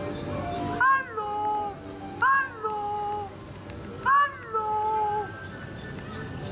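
A recorded moaning voice from the yawning Holle Bolle Gijs figure. It gives three drawn-out moans, each opening with a quick rise and fall in pitch and then held on a lower note.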